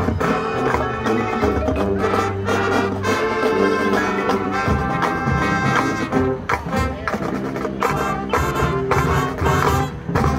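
Marching band playing brass over drums, with a steady beat of drum strokes. The music stops right at the end.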